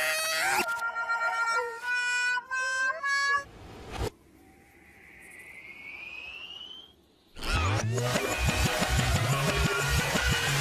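Cartoon music and sound effects: a run of short pitched notes stepping upward, a sharp hit about four seconds in, then a faint rising whistle, before lively music with a steady beat comes in about seven seconds in.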